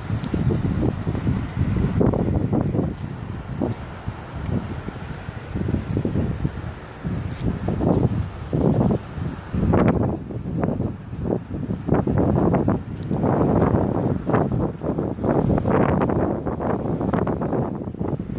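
Wind buffeting a mobile phone's microphone, a low rumble that surges and drops in irregular gusts, heavier in the second half.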